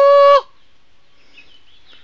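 A person's loud, high, held call on one steady note that cuts off abruptly near the start, followed by low background sound.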